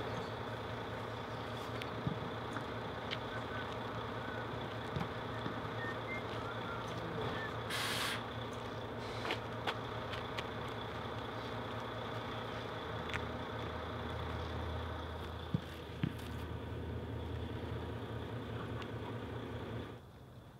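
Coach bus engine idling with a steady hum, and a short burst of hiss about eight seconds in.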